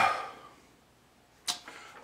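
A pause in a man's reading aloud: a hesitant "uh" trails off, then a quiet room with one brief sharp click about one and a half seconds in, just before he speaks again.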